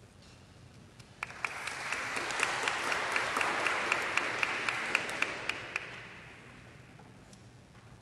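Audience applauding. It starts about a second in, swells, then dies away well before the end, with individual claps standing out.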